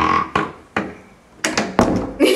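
Interior door pulled shut by its metal lever handle: a few clicks of the handle and latch, then a cluster of sharper clicks with a thump as the door closes near the end.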